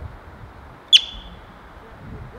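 Yellow-bellied marmot giving a single sharp, high-pitched alarm chirp about a second in: a quick sweep that settles into a short whistle.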